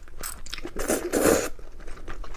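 Close-miked eating: a mouthful of soft noodles pulled in off a spoon with a long, loud slurp just after the middle, surrounded by short wet chewing and crackling mouth sounds.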